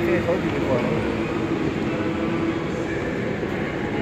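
Steady shopping-mall background noise with a constant low hum and faint voices in the distance.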